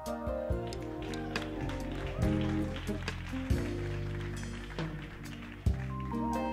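Live jazz-funk band playing the opening of a tune: sustained chords over a bass line, with loud drum accents a little over two seconds in, at about three and a half seconds, and near the end.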